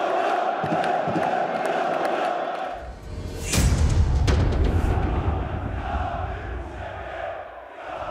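Stadium crowd chanting in an intro sting. About three seconds in, a whoosh sweeps up and music with a heavy bass takes over.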